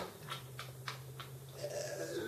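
A man laughing hard in short breathy, near-silent bursts, about three a second, over a faint steady hum.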